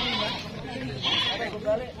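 Goats bleating among people talking in the background.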